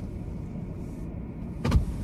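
Low steady rumble of an SUV heard inside its cabin, with a short thump near the end.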